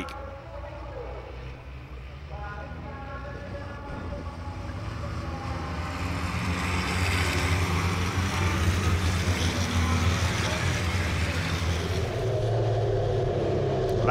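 Racing trucks' diesel engines running as the pack passes at a restrained pace, a steady low drone with a rushing hiss that grows gradually louder over the first ten seconds as the trucks come closer.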